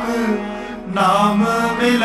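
A man singing Sikh shabad kirtan, a sung Gurbani hymn in a gliding devotional melody, with instrumental accompaniment. The voice pauses briefly just before the middle and comes back in about a second in.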